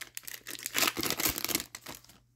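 Wrapper of a hockey card pack being torn open and crinkled: an irregular crackling that starts about half a second in and lasts roughly a second and a half.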